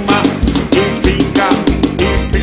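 Live forró band playing a steady dance beat: drum kit and bass under accordion, keyboard and electric guitar.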